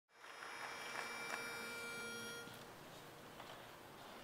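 A faint chord of several steady held tones lasting about two seconds and then cutting off, followed by faint room noise.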